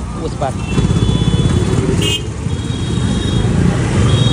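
Motorcycles running close by in busy street traffic, a dense low engine rumble, with a brief high-pitched beep about two seconds in.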